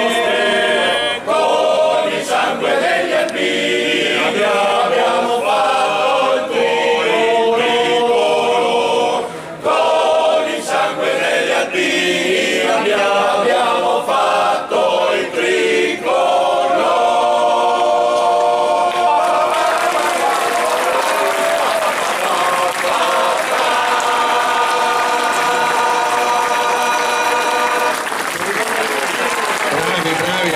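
Men's choir singing a cappella in several parts, closing on a long held chord about two-thirds of the way in, which stops near the end. Audience applause rises under the final chord and carries on after it.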